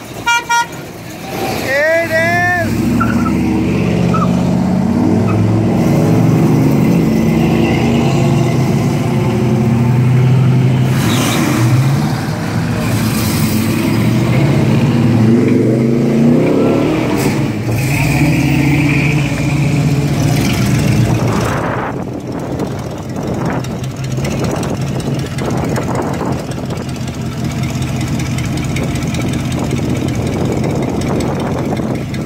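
Classic cars cruising slowly past at low speed, their engines rumbling and swelling as each one goes by. A quick run of car-horn toots comes right at the start.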